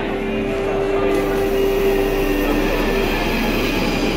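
London Underground Northern line train in a station, its wheels squealing on the rails. A high-pitched whine comes in suddenly about a second in.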